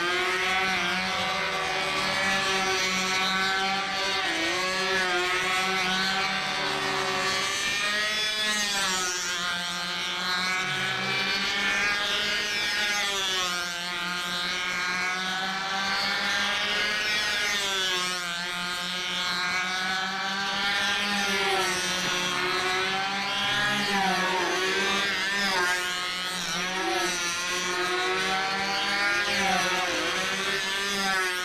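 The two small engines of a twin-engine, four-wing control-line model plane run at full speed as it circles the pilot. Their high buzz rises and falls in pitch every few seconds as the plane comes round each lap.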